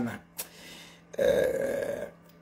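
A man's voice making one rough, drawn-out non-speech sound, just under a second long, in the second half, after a faint click.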